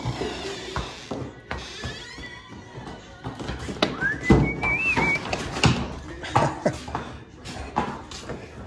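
Hooves of Friesian horses knocking on a concrete barn aisle in irregular steps as the horses walk out, the loudest about halfway through. A brief high warbling whistle sounds in the middle.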